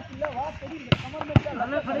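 A volleyball struck twice by players' hands, two sharp slaps about half a second apart, the second louder. Players shout and call throughout.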